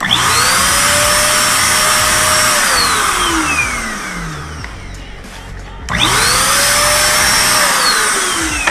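Handheld electric paint sprayer on its lowest setting, spraying hydro-dip activator over the floating film. Its motor spins up quickly to a steady whine with a strong airy hiss, runs for about two and a half seconds, then winds down with a falling pitch. A second burst starts about six seconds in and winds down near the end.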